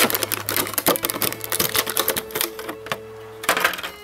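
Clear plastic blister packaging crackling and clicking as it is flexed and a die-cast toy car is pulled out of it: a dense run of sharp crinkles with a louder burst near the end.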